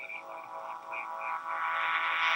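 Electronic drone of many held tones swelling slowly, with short high warbling blips over it in the first part.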